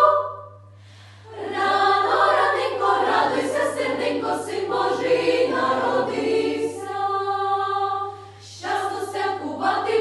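Children's choir singing a Ukrainian carol in several parts. A held chord breaks off into a brief pause, the singing comes back in about a second in, settles on another held chord, dips briefly near the end and goes on. A steady low hum lies under it.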